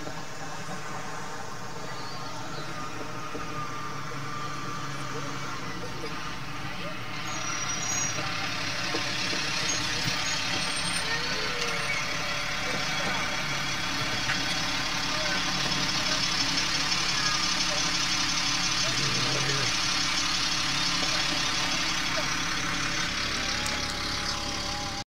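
School bus engine running as the bus comes up to the curb and idles there, growing louder from about eight seconds in.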